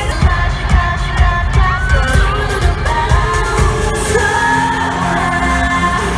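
K-pop song performed live by a girl group: female vocals over a pop beat, heard through the concert PA from the audience. A steady kick-drum pulse carries the first few seconds, then gives way to long held bass notes about four seconds in.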